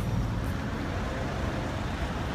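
Steady street traffic noise: a low rumble of road vehicles.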